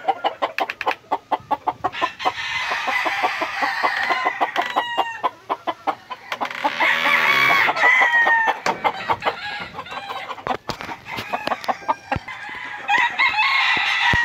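Several gamecock roosters crowing and clucking, calls from different birds overlapping. A rapid run of short clicking sounds fills the first few seconds.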